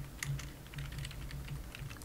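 Computer keyboard being typed on: an uneven run of short key clicks as a command is entered.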